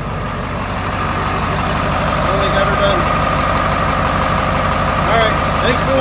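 1989 Detroit diesel engine in a GM truck idling steadily, with the freshly rebuilt alternator charging. A steady high-pitched whine joins about a second in.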